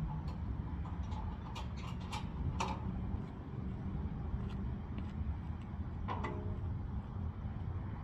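Sharp metallic clicks and knocks from the steel loading ramps of a car-hauler trailer being handled, a quick run of them a second or two in and one louder clank with a short ring near the end, over a steady low rumble.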